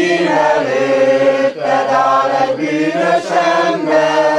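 A group of amateur men and women singing a song together, holding long notes, with a short break for breath between phrases about one and a half seconds in.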